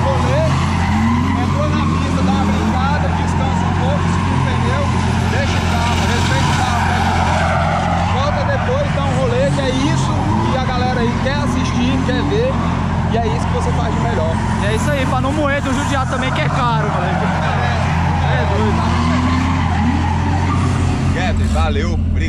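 Turbocharged BMW 328's engine running steadily at idle, with repeated short tyre squeals from a car drifting through the whole stretch.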